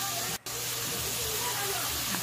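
Chicken pieces sizzling steadily in a pot with sautéed ginger, onion and tomato. The sound cuts out for a moment about half a second in.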